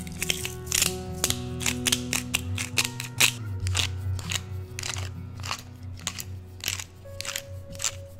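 Salt and pepper being sprinkled by hand onto a block of tofu: quick, irregular dry crunches and ticks, several a second, over background music.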